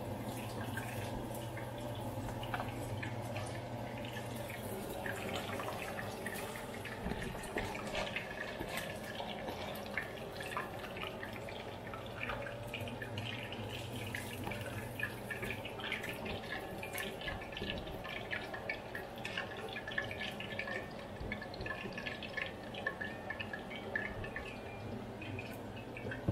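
Hot oil crackling and sizzling as chicken wings flash-fry, with scattered irregular pops over a steady low hum.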